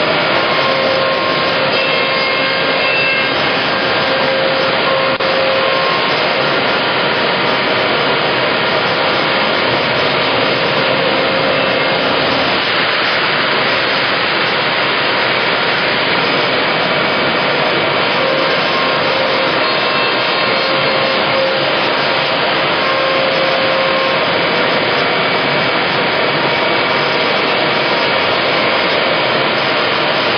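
CNC router cutting a wooden cabinet-back panel: the spindle and its dust extraction give a loud, steady rushing, with a faint whine that comes and goes.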